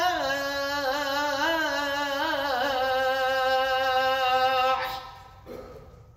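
A man's voice calling the adhan, the Islamic call to prayer, into a microphone: one long, ornamented chanted phrase that steps down in pitch and ends about five seconds in, its echo dying away in the hall.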